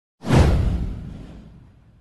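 Intro whoosh sound effect: a single swoosh with a deep low rumble beneath it. It starts sharply just after the beginning, sweeps downward and fades away over about a second and a half.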